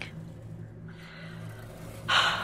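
A low steady hum under faint hiss.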